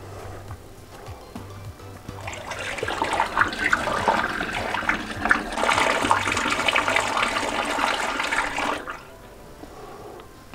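Water poured from a kettle held high through a plastic funnel into a large plastic bottle of honey must, splashing and gurgling. Pouring from height aerates the brew to help the wild yeast get going. The pour starts about two seconds in, gets louder midway, and stops about a second before the end.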